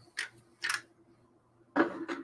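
Typing on a computer keyboard: two separate keystrokes in the first second, then a quick run of taps near the end.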